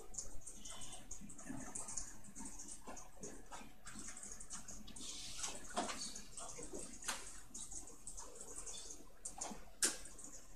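Faint computer-classroom background: scattered small clicks and rustles over a steady low hiss, with a sharper click near the end.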